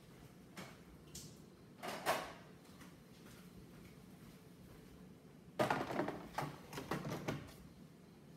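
Plastic knocks and clatter of the Jura Z6's coffee grounds container being handled while it is emptied. A few light knocks come in the first two seconds, and a louder run of clatter comes about five and a half seconds in as the container is pushed back into the machine.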